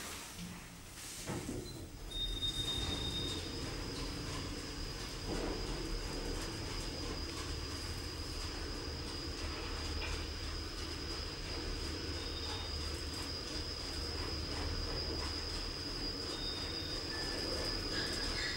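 Otis scenic traction lift car travelling down its shaft: a steady low rumble of the ride, with a thin high whine held steady after it gets under way about two seconds in. A brief higher tone sounds as it sets off.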